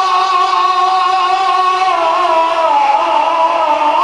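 A man's solo voice chanting a naat into a microphone, holding one long high note that wavers and slides downward from about halfway through.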